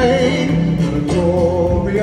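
A male singer holding long sung notes with vibrato over backing music, in a live stage performance.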